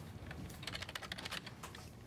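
Typing on a computer keyboard: a quick run of key clicks, densest in the middle.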